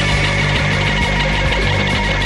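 A home-recorded punk rock demo played by a full band: distorted electric guitar, bass and drums, with cymbals struck at a steady beat and no singing in these seconds.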